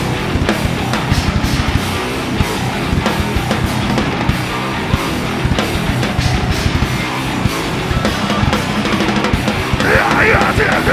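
Live metal band playing an instrumental passage without vocals: distorted electric guitar and electric bass over a busy drum-kit beat.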